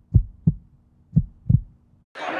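Heartbeat sound effect: two low lub-dub double thumps, about a second apart.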